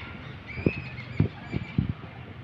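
Four short, dull, low thumps over a faint outdoor background, the second one loudest.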